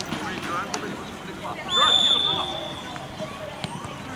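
A referee's whistle blown once, about two seconds in: a single steady blast lasting about a second and louder than anything else, signalling the restart for the set piece. Players and onlookers shout and call around it.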